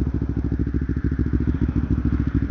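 Kawasaki Ninja 250R's parallel-twin engine running steadily at low revs, an even, rapid putter.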